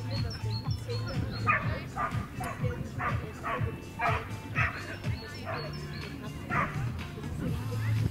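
A dog barking repeatedly, in sharp barks about every half second, with small birds chirping near the start.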